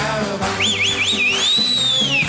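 A shrill finger whistle over band music with a steady beat: three quick wavering swoops about half a second in, then one long whistle that rises and falls away near the end. The music underneath is accordion and guitar.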